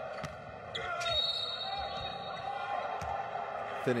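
Basketball arena crowd murmur with a referee's whistle blown in one long, high blast starting about a second in. A few sharp knocks from the court.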